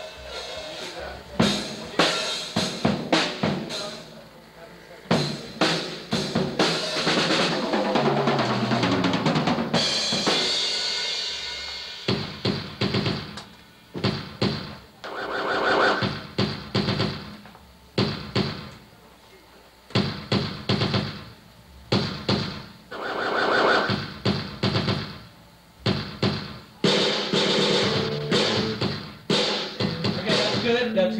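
A drum kit played around the whole kit for a soundcheck: sharp snare and kick hits in short bursts with gaps between them. About eight seconds in there is a tom run stepping down in pitch, then a crash cymbal that rings out and fades.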